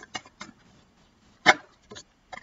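A deck of tarot cards handled and shuffled by hand: a few soft card flicks, then one sharper snap of the cards about a second and a half in.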